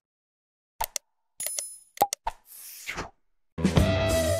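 Sound effects of an animated subscribe button: a few sharp clicks and pops, a short bell-like ding, and a quick whoosh. Music with guitar begins near the end.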